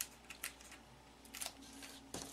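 A few faint clicks and light paper handling as cardstock is pressed and handled on a craft mat, with one sharper tick about one and a half seconds in.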